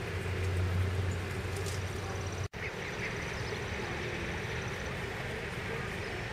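Mallard ducks calling softly among a resting brood, over a steady low rumble of background noise. The sound drops out for an instant about halfway through.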